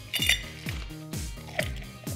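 Ice cubes clinking as they are scooped with a metal ice scoop into a clear cup around a mini champagne bottle, over background music with a steady beat of about two a second.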